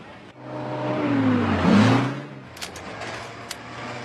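Off-road race vehicle's engine passing close by: it grows louder for about a second and a half, and its pitch drops as it goes past. A couple of sharp clicks follow over a steady low hum.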